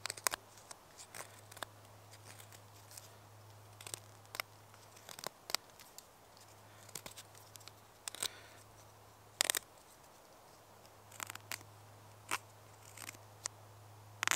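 Stainless-steel Morakniv Bushcraft knife blade carving fine shavings off a thin wooden stick with its tip: irregular short scraping snicks, the loudest about eight and nine and a half seconds in.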